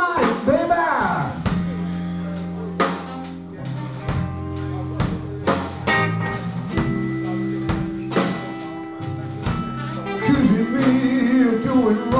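Live blues band playing: a drum kit keeps a steady beat under electric guitars, electric bass and saxophone. A bending lead line sounds near the start and comes back from about ten seconds in, with held chords between.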